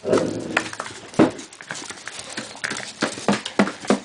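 A wire-haired dachshund moving across a hard floor with a plastic case held in its mouth: irregular clicks and knocks of claws and case, the loudest about a second in and several more close together near the end.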